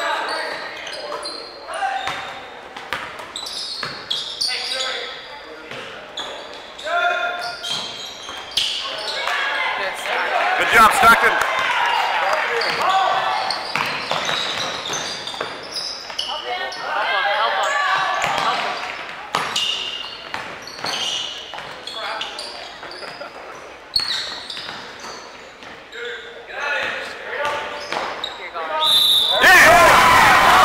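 A basketball dribbling and bouncing on a hardwood gym floor during play, with players' and spectators' voices and shouts echoing around the gymnasium. A short whistle sounds near the end.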